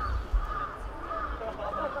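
Crows cawing repeatedly, a string of short arched calls, with a couple of low thumps near the start.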